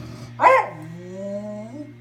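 A small dog barks once, sharply, then lets out a drawn-out whine that dips and then rises in pitch, over a steady low hum.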